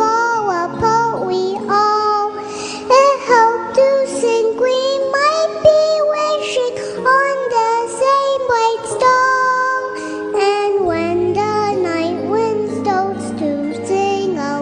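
A four-year-old girl singing a song into a microphone over a backing track, holding and sliding between notes in sung phrases. The accompaniment's low sustained notes grow fuller about eleven seconds in.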